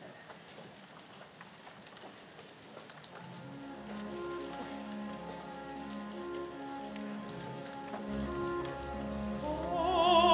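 Quiet church room tone with faint rustling for about three seconds, then a pipe organ comes in softly with long held chords, and a low bass note joins about eight seconds in. Near the end a solo singer's voice with vibrato begins over the organ.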